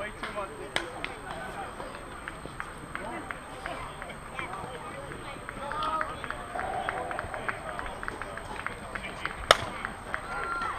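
Softball bat hitting the pitched ball with a single sharp impact near the end, over distant players' voices and chatter.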